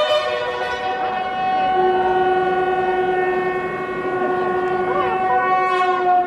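Several military bugles holding a long call in parts, sounding together like a chord, with a lower note joining about two seconds in and held to the end.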